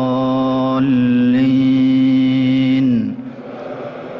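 An imam's chanted recitation holds its last word, "wa la ad-dallin", on one long steady note. About a second in, the congregation joins him in a unison sung "Amin" of about two seconds, which stops sharply near three seconds and leaves the echo of the mosque's vast hall dying away.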